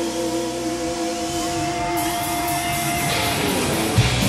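Live rock band playing: held electric guitar notes ring over the drums, with cymbal crashes coming in about halfway and the band growing louder and fuller near the end.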